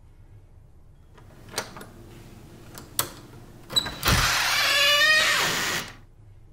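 Horror-film sound effect: a few sharp clicks, then a loud noisy rush with several shifting whining tones lasting about two seconds, which cuts off suddenly.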